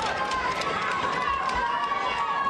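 Spectators shouting and cheering, many voices overlapping, with one long held call through most of it.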